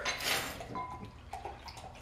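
Thick imperial stout being poured from a bottle into a glass, pouring like syrup, with a few light clicks of glass and bottle handling.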